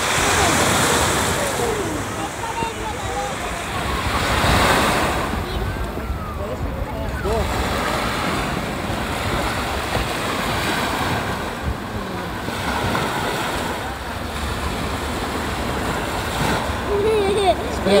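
Steady wash of sea surf on a sandy beach, swelling now and then, with wind blowing on the microphone.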